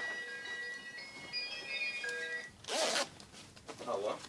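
A zipper on a child's zip-up jacket pulled in one quick rasp a little past halfway, with a smaller rasp near the end, over soft background music with held bell-like notes.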